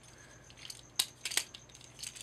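Plastic parts of a Transformers Generations Deluxe Orion Pax figure clicking lightly as they are handled and brought together during its transformation, the two sharpest clicks a third of a second apart about a second in.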